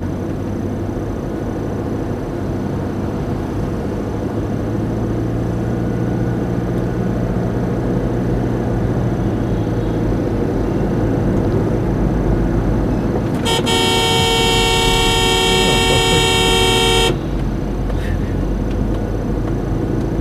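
Road and engine noise heard inside a moving car. A little past the middle comes one long, steady vehicle-horn blast of about three and a half seconds, which cuts off suddenly.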